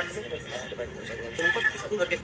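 Voices talking over a noisy background, in a rougher recording than the interview speech that follows.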